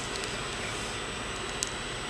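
Steady hiss of room tone, with one faint tick about one and a half seconds in.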